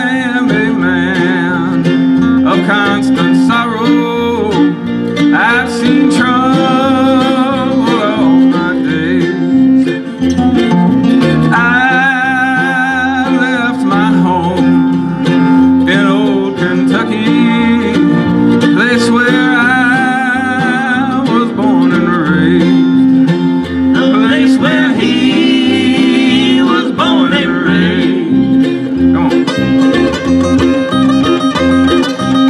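Live Celtic folk band playing a tune: fiddle carrying a wavering melody over acoustic guitar, a small plucked-string instrument and electric bass, played without a break.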